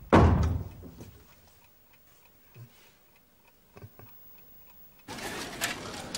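A loud bump right at the start that dies away over about a second, then a clock ticking faintly in a quiet room. A little after five seconds, steady outdoor background noise sets in.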